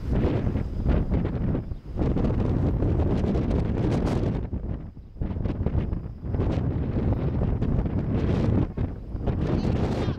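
Wind buffeting the microphone in gusts: a low rumbling rush that drops away briefly a few times.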